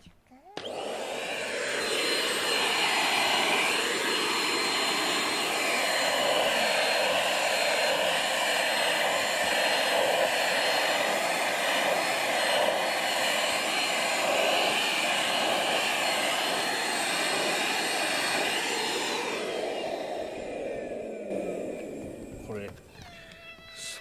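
Vacuum cleaner switched on and running steadily, a loud rushing noise with a thin high whine over it. About nineteen seconds in it is switched off, and the whine falls away as the motor spins down.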